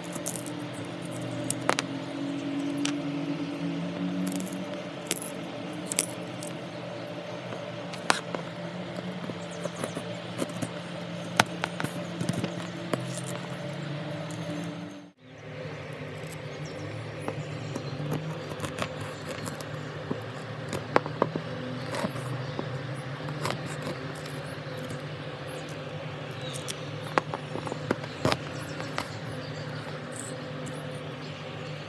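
Kitchen knife scraping and cutting through the fibrous husk and flesh of a tiny coconut, with irregular sharp crunchy clicks, over a steady low background hum. The sound drops out briefly about halfway through.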